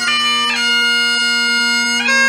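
Great Highland bagpipe playing piobaireachd: the drones sound steadily under slow, long-held chanter notes, with a quick gracenote flourish about half a second in leading to the next held note.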